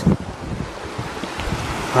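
Muddy floodwater rushing steadily down a desert wadi, mixed with wind buffeting the microphone. The flow is fairly light.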